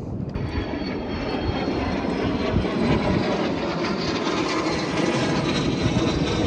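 Engines of several airplanes flying overhead, a steady rumble that slowly grows louder.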